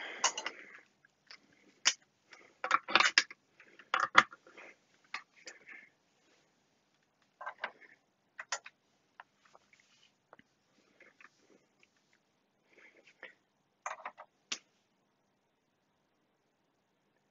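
Scattered light clicks and knocks from test leads being plugged in and a resistance decade box's knobs being handled on a workbench. They come in small clusters with quiet gaps between.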